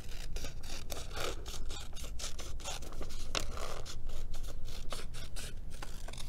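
Scissors cutting construction paper into a wavy strip: a steady run of short, irregular snips.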